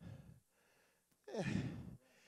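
Faint breath sounds from a man between spoken phrases: a short breath at the start, then a brief low voiced exhale with falling pitch near the end.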